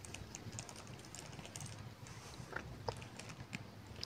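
Faint scattered clicks and light taps as onions are tipped from a plate into a glass blender jar, with a couple of slightly louder taps past the middle.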